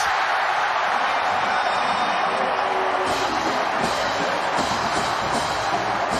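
Stadium crowd cheering loudly after a successful home two-point conversion, with music playing under it.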